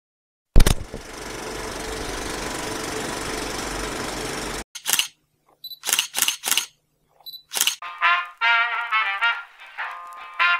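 Intro sound effects: a sharp hit, then a steady hiss of about four seconds that cuts off suddenly, then a run of about seven camera-shutter clicks. Trumpet-led music starts about eight seconds in.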